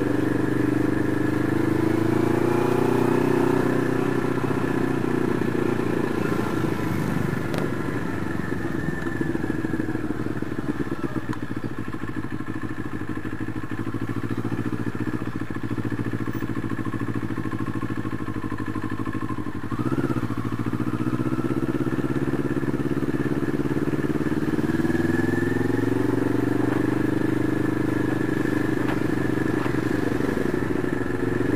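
CFMoto 400NK motorcycle's parallel-twin engine running on the move: its note falls as the bike slows over the first several seconds and stays low through the middle. It gives a short blip about twenty seconds in, then climbs as the bike speeds up again near the end.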